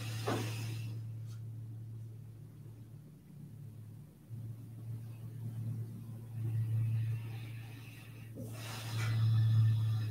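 A person's slow, audible breaths during a held seated yoga twist: one long breath right at the start and another from about 8.5 seconds on, over a steady low hum.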